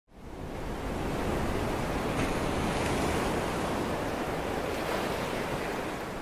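Ocean surf: a steady wash of breaking waves that fades in at the start and eases off slightly near the end.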